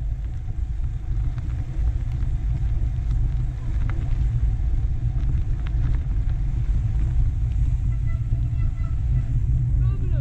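Steady low rumble of a mountain bike riding a dirt singletrack, with wind buffeting the camera microphone and the tyres running over the dirt; it builds in the first second as the bike gets moving, with a few faint clicks.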